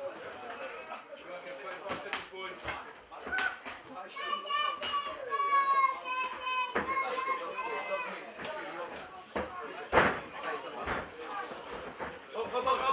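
Spectators' voices around a cage fight, with a child's high-pitched voice calling out from about four to seven seconds in. Scattered sharp knocks and slaps run through it, with one louder knock about ten seconds in.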